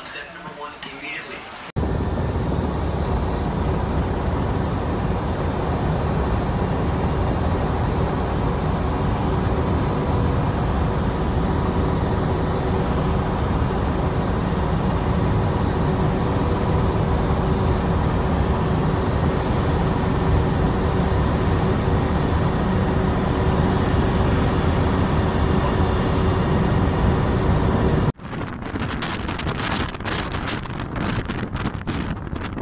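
Helicopter engine and rotor noise heard from on board: a loud, unchanging drone with a steady high whine over it. Near the end it cuts off suddenly to wind buffeting the microphone.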